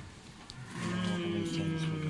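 A man's long, drawn-out hesitation hum ("mmm"), starting about two-thirds of a second in and held at one steady pitch, a thinking sound before an answer.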